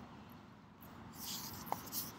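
Scratchy rubbing and rustling of a handheld camera being moved, with a hissy scrape about a second in and one short sharp tick near the end.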